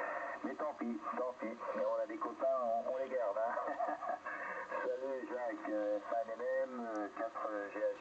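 Speech received over an HF amateur radio transceiver on the 40-metre band, heard through its loudspeaker, continuous but with the words not made out.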